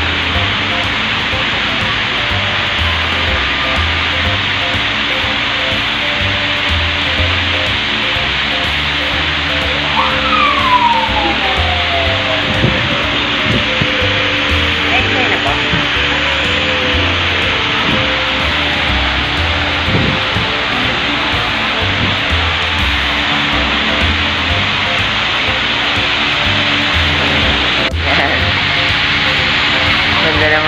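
A loud, steady rushing noise with faint music underneath. About ten seconds in, a tone slides slowly downward.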